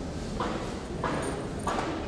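Footsteps on a hard floor at an even walking pace, about three steps in two seconds.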